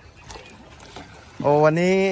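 Faint sound of floodwater for about a second and a half, then a man calls out loudly with a drawn-out "Oh" as he begins to speak.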